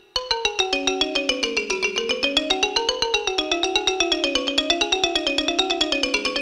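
Ranat ek, the Thai boat-shaped xylophone, played solo with two mallets: after a brief break, a fast, even stream of struck notes starts just after the beginning, the melody winding down and back up.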